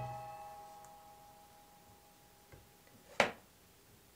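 The tensioned steel wires of a multi-wire soap cutter ring out in several steady pitches and fade away within about a second, just after the cutter's wire frame comes down through a soap log. A single sharp knock follows about three seconds in.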